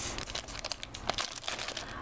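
Clear plastic packaging crinkling as a bagged craft item is handled, a quick irregular run of small crackles and rustles.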